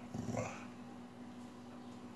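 A dog making one short, rough grumbling growl in the first half second, a friendly vocal rather than a bark.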